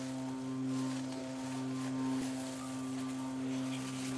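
Sustained chord held on a keyboard: a steady drone of a few low pitches that swells gently up and down in volume.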